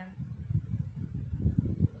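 Low, uneven rumbling noise that swells and dips quickly.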